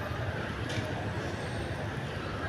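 Steady low background rumble with a short click about two-thirds of a second in.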